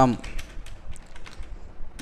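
Computer keyboard typing: a run of irregular, quick keystrokes as a short phrase is typed.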